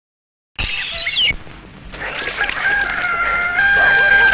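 After a moment of silence, sound cuts in suddenly about half a second in: a rooster crowing, ending in a long held note, over background street noise.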